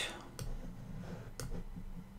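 A few separate, sharp computer mouse clicks, the clearest near the start, just under half a second in and a little before the end.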